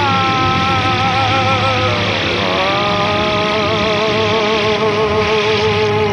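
Live rock band music carried by a long held, wavering note that slides down and back up about two seconds in, over a full, steady band sound.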